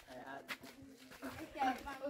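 Faint, quiet voices of people talking in the background, with a brief click about half a second in.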